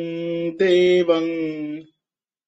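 A man chanting a Sanskrit invocation verse to Krishna in a slow, sustained melody, holding long steady notes in two phrases with a brief break about half a second in. The voice stops near the end.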